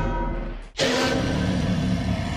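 Sound effects for an animated logo at the end of a video: music with held tones fades out, then about three-quarters of a second in a sudden loud hit starts and rings on as a long, noisy sustained tone.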